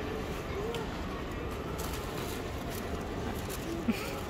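Steady background hum of a shop with a faint, brief voice and a few light clicks.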